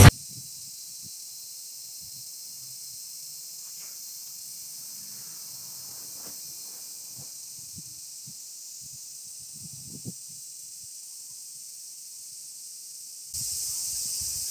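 Quiet outdoor ambience: a steady high-pitched hiss with only faint scattered low sounds, rising a little in level near the end.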